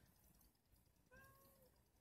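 A single faint cat meow, short, about a second in.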